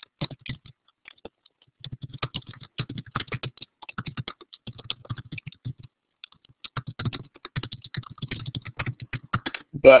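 Rapid typing on a computer keyboard: a dense run of keystrokes starting about two seconds in, with a brief pause around the middle, stopping just before a man's voice near the end.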